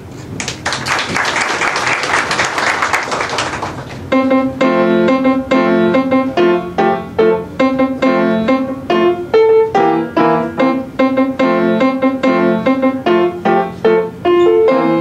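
Audience applause for about three and a half seconds between pieces, then a grand piano starts a new piece about four seconds in, played as a quick, even stream of notes.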